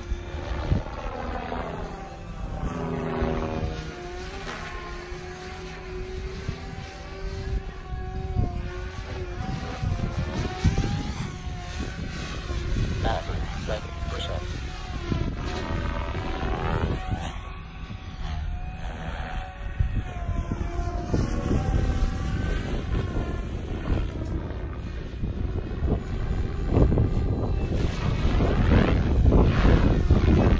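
SAB Goblin 500 Sport electric RC helicopter flying overhead: its rotor and motor sound rises and falls in pitch as it swoops and passes, and it grows louder in the last few seconds.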